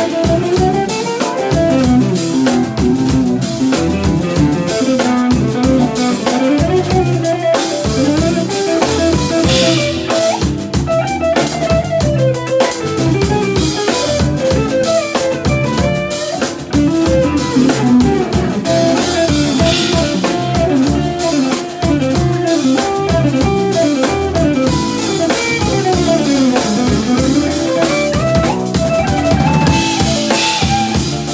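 Live band playing an instrumental jam: guitars playing melodic lines that slide up and down over a drum kit groove.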